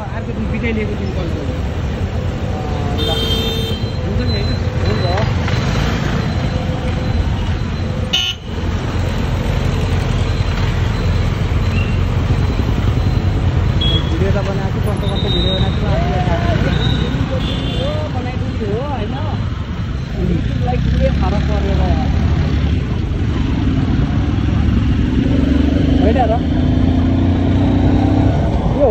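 Busy street traffic heard while riding through it: a steady engine and road rumble, with short horn toots a few seconds in and again around the middle.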